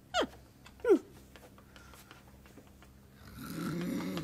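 A Muppet character's voice makes two short vocal sounds that fall in pitch, then goes quiet. Near the end a low vocal sound starts and grows louder.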